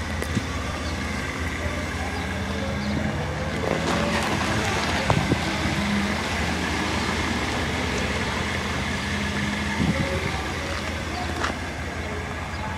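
A car engine running with a steady low rumble, its pitch shifting slightly now and then.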